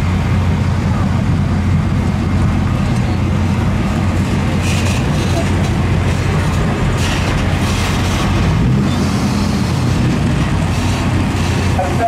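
Pickup truck engine running with a steady low rumble while towing a loaded gooseneck trailer, with a few short hisses in between.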